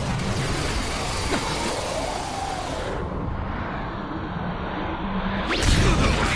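Anime fight sound effects: a continuous rushing swoosh that thins out about halfway, then a loud sudden impact with a rising whoosh just before the end.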